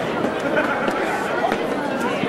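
Crowd chatter: many people talking at once in a steady babble of overlapping voices.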